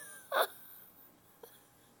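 A woman's single short, breathy catch of the voice about half a second in, then faint room tone.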